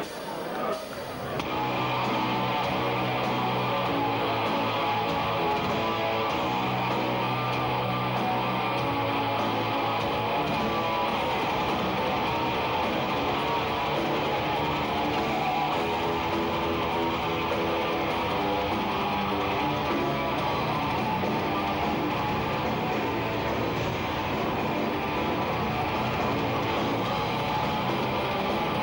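Melodic death metal band playing live, the full band coming in about a second and a half in: distorted electric guitars, bass guitar and drums at a steady level.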